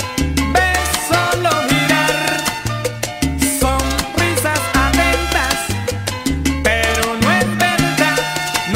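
Salsa music: a recorded salsa band playing, with a bass line in short repeated phrases under percussion and melodic lines that slide in pitch.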